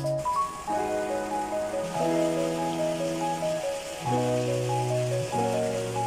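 Background music: held chords that change every second or so, with a light plinking melody above them, over a steady hiss.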